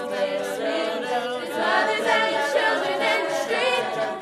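A girls' a cappella vocal group singing in harmony, voices only with no instruments.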